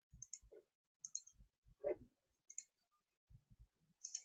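Near silence broken by a dozen or so faint, scattered clicks, typical of a computer mouse being used to start sharing a screen. The loudest is a soft knock about two seconds in.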